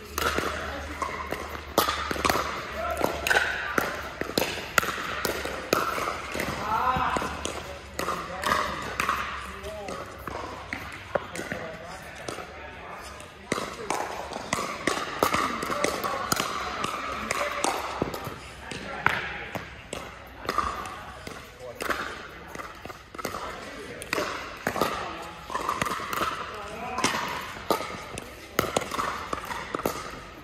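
Pickleball being played in a large indoor hall: paddles strike a plastic ball and the ball bounces on the court, giving sharp hits at irregular intervals throughout, with people's voices talking over them.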